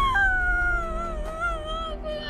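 A woman's long, drawn-out wail as she cries, held as one wavering note that sinks slowly in pitch.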